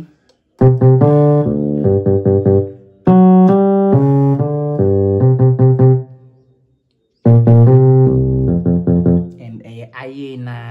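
Yamaha portable keyboard on its electric piano voice, playing a simple bass line low on the keys in three short phrases. A pause of about a second falls just after six seconds in.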